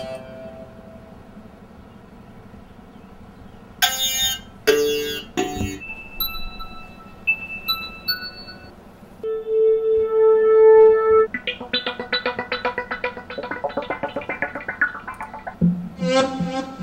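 Synthesizer notes. After a quiet start, three short stabs come about four seconds in, then a few scattered tones and one held note, then a fast run of repeated notes whose brightness fades near the end.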